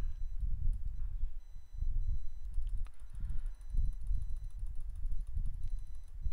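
Low, uneven rumble of background noise on the narration microphone, with faint thin high electronic tones over it.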